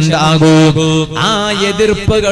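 A man's voice chanting in a drawn-out melodic line, holding long notes with no pauses, as in sung religious recitation.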